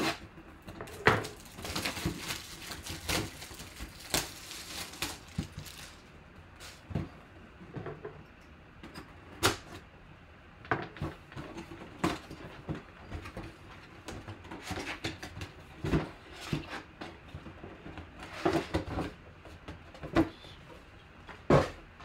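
Hands cutting open and handling a cardboard collectibles box: scattered clicks, taps and rustles of cardboard and packaging, busiest in the first few seconds, with a sharper knock near the end.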